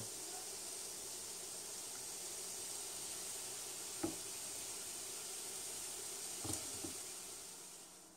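Diced apple and onion sizzling in coconut oil in a frying pan, a steady hiss, fading near the end. One sharp knock about four seconds in and a couple of soft thumps later on, from hands and food on a wooden cutting board.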